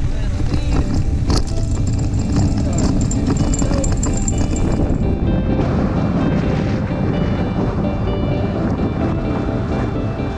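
Wind rushing over the microphone and a rumble as a tandem hang glider rolls on its launch cart across grass. About halfway through, background music takes over.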